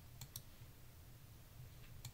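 Near silence with two faint computer clicks close together, about a quarter second in, as a presentation slide is advanced.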